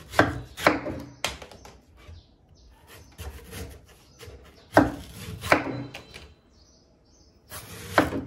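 Kitchen knife slicing through the fibrous white husk of a young green coconut on a wooden board: a series of crisp cutting strokes, three quick ones at the start, two more about halfway, and another beginning near the end.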